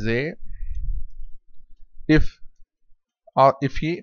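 Typing on a computer keyboard, keys clicking, mixed with short phrases from a man's voice.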